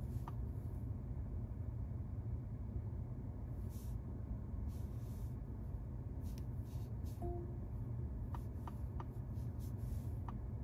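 Steady low hum inside a stationary car's cabin, with a few light fingertip taps on the infotainment touchscreen and a single short beep about seven seconds in.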